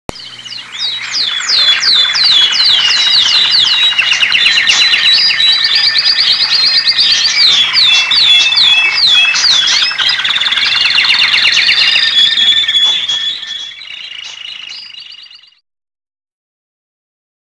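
Intro sound effect of many high, bird-like chirps and whistles overlapping, with quick falling sweeps several times a second. It thins out over the last couple of seconds and cuts off just before the end.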